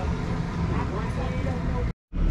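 Steady low hum with faint voices in the background, which cuts off suddenly near the end.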